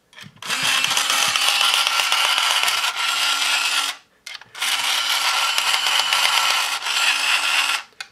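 OfficeWorld Autofeed electric pencil sharpener's motor running in two spells of about three and a half seconds each, with a short break in the middle. The 7.5 mm drawing pencil pressed to its opening is too thick for the sharpener to draw in.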